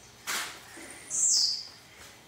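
A caged trinca-ferro (green-winged saltator) gives a short high, thin whistled call that falls in pitch about a second in. A brief harsh, rasping burst comes shortly before it, about a quarter second in.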